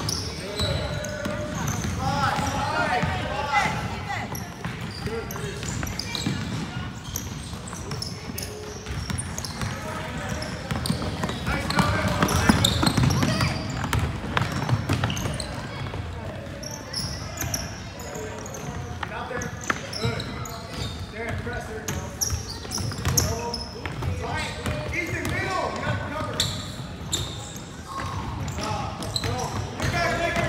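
Youth basketball game in a large gym: the ball bouncing on the hardwood court amid many short knocks, with players and spectators calling out over the sound.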